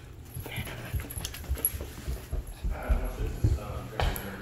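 Footsteps going down a carpeted staircase: a run of irregular dull thumps.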